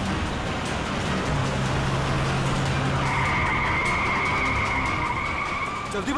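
Car-chase sound effects: a car engine running hard at speed with tyres skidding. A steady high squeal joins about halfway through.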